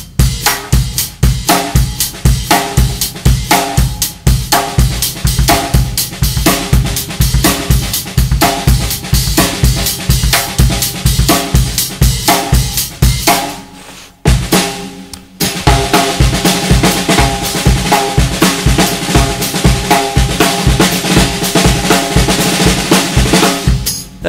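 Drum kit played in a steady funk groove on a reverse-clave pattern, with the hi-hat opening naturally on the offbeats. The playing stops for about a second a little past halfway, then picks up again with more cymbal wash.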